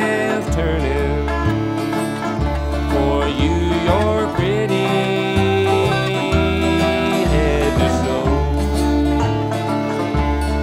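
Instrumental break of a bluegrass song, banjo and guitar playing together, with a few sliding notes.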